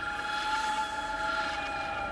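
Film background score: a held chord of several sustained tones, swelling slightly in loudness.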